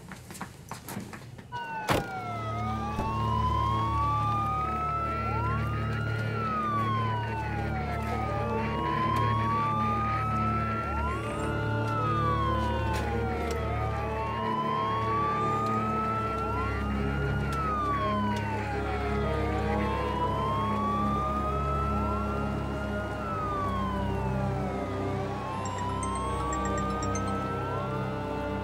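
Several police sirens wailing together, rising and falling in overlapping cycles about two seconds long, over film music with low held notes. They come in with a sharp hit about two seconds in.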